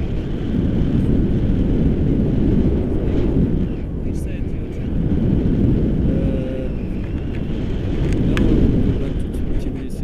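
Wind rushing over an action camera's microphone in flight under a paraglider: a loud, low rush of air that swells and eases every few seconds.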